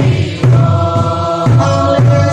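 A congregation singing together, with a large barrel drum beating a steady pulse under the voices.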